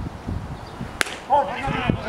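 A single sharp crack about a second in as the pitched baseball reaches home plate, followed at once by players' shouts and calls from the field.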